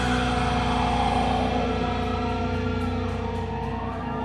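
Amplified electric guitars and bass ringing out on a held final chord after the drums stop, the sustained tones slowly fading.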